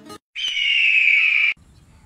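A bird-of-prey screech sound effect: one harsh cry of just over a second, starting about a third of a second in and falling slightly in pitch, then cut off sharply. It accompanies a wipe transition between segments.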